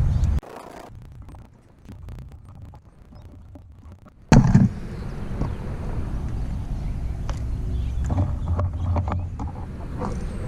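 Electrical tape being pulled off the roll and wrapped around a wire connection, a run of faint crackling clicks. About four seconds in comes a sharp knock, the loudest sound, and after it a steady low rumble.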